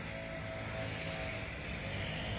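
A steady low background hum with a few faint steady tones in it, unchanging throughout; no distinct event stands out.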